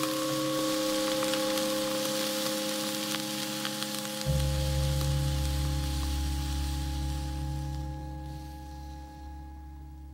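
Cucumbers sizzling and hissing in a hot pot on the stove, the hiss thinning out and fading near the end. Under it a sustained musical drone, which a deep low note joins about four seconds in.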